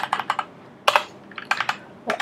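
Computer keyboard keystrokes in short bursts: a few quick taps at the start, a single tap about a second in, and a few more near the end.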